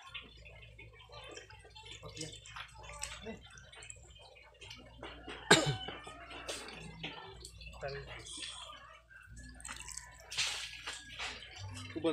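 Wet taro leaves rustling and crinkling as they are laid by hand into a metal cooking pot, with dripping and small splashes of water from the washed leaves. There is one sharper click about five and a half seconds in.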